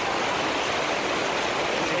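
Floodwater from an overflowing river rushing down a street in a torrent, with heavy rain falling: a steady rush of water.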